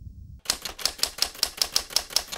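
Typewriter key-strike sound effect: a quick run of sharp clicks, about six a second, beginning about half a second in, as a title is typed out letter by letter.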